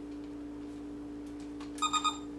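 A steady low electronic hum with a few faint handling clicks, then near the end a short electronic beep from a Radio Shack Robot Laser Battle toy robot as it is switched on, just before its synthesized voice starts.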